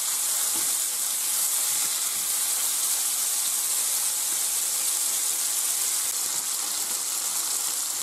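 Pork tenderloin pieces frying in hot olive oil in a frying pan, a steady sizzle.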